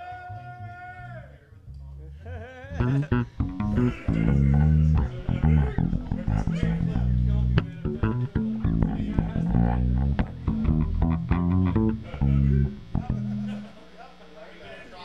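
Electric bass guitar played through an amp: a run of low plucked notes stepping up and down in pitch, starting about two and a half seconds in and stopping shortly before the end.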